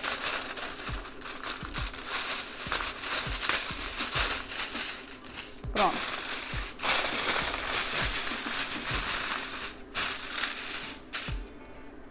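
Aluminium foil crinkling and rustling as a sheet is torn from the roll and pressed down over a dish, in short noisy spells that die away near the end. Background music plays underneath.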